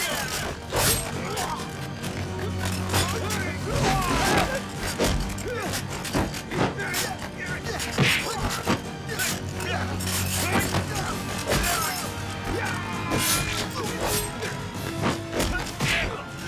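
Fight-scene soundtrack for a bayonet and rifle melee: background music with a steady low drone under repeated sharp hits and clashes, mixed with wordless shouts and grunts.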